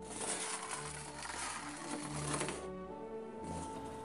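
Battery-and-neodymium-magnet carriage rattling as it is driven through a coiled copper wire track, a dense rapid clatter that runs for about two and a half seconds, breaks off and returns briefly near the end. Soft background music throughout.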